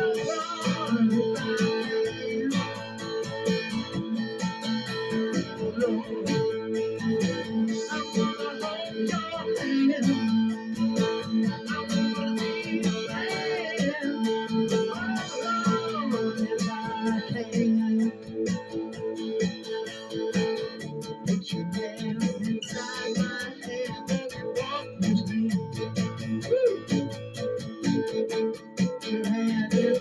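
Acoustic-electric guitar strummed steadily, an instrumental passage of chords with an even rhythm.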